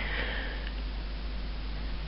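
A person breathing in sharply through the nose: one short sniff near the start, over a steady low hum.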